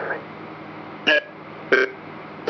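Necrophonic ghost-box app on a tablet playing a steady hiss of white noise, cut by two short, clipped voice fragments from its sound bank, about a second in and near the end; one is heard as "yeah".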